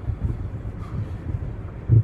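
Low, steady rumble of a car driving, heard inside the cabin, with one brief thump just before the end.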